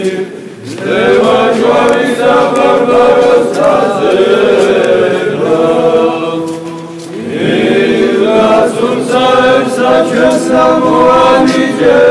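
Several voices singing an Orthodox church chant together in long held phrases, with a brief pause just after the start and another about seven seconds in.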